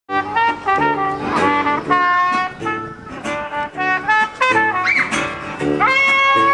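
Small acoustic jazz-blues street band playing: trumpet phrases of short notes over tuba bass and guitar, sliding up into a held note near the end.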